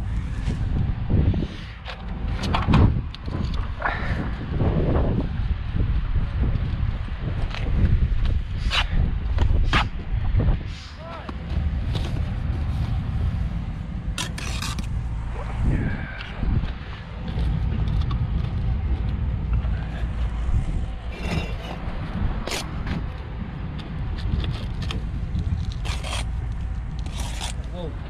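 Bricklaying work: a steel trowel scraping and knocking against clay bricks and mortar in scattered short strokes, over a steady low rumble.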